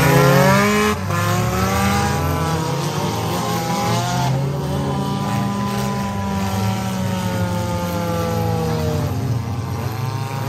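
Several figure-8 race cars' engines running hard in a heat race, their pitches repeatedly rising and falling as the drivers get on and off the throttle.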